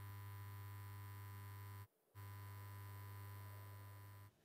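Faint steady low electrical hum, cut off by a brief moment of dead silence about halfway through.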